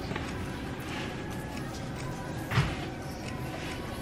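Low steady room noise with a single thump about two and a half seconds in.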